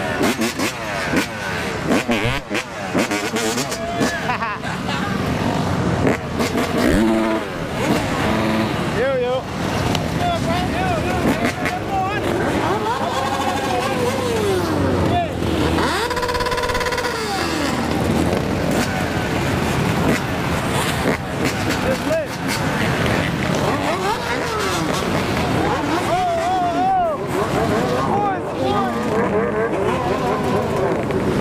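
A crowd of motorcycles and ATVs idling and revving close by, several engines rising and falling in pitch over one another, with voices calling out among them.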